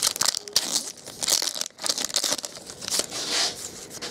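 Foil wrapper of a 2012 SP Authentic golf card pack being torn open and crumpled: an uneven run of sharp rips and crinkly rustles.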